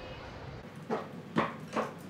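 A low, steady city hum cuts off, then hard footsteps fall about twice a second, as of someone walking down stairs.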